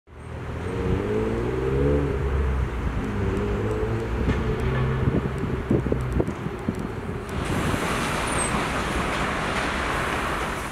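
City street traffic: motor vehicles passing, one engine rising in pitch as it accelerates over the first couple of seconds, then a steady hiss of traffic from about seven seconds in.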